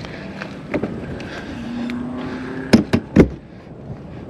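Three sharp knocks on the fifth-wheel trailer's exterior sidewall panel, close together about three seconds in, over outdoor background noise.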